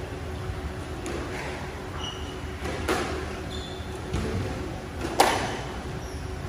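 Squash rally: four sharp knocks of the ball off rackets and court walls, the loudest about five seconds in. Short sneaker squeaks on the wooden court floor come between them, over a steady hum.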